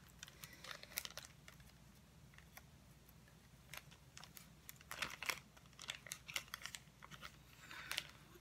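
Faint, scattered crinkles and clicks of a small clear plastic zip-lock bag being handled and pulled open by hand, busier in the middle and again near the end.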